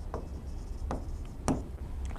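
Marker pen writing on a whiteboard: a few short, light strokes as a word is written out.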